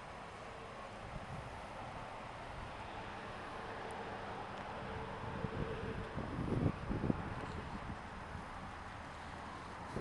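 Outdoor background hiss with wind on the microphone. A stretch of louder, uneven rumbling and rustling comes a little past the middle.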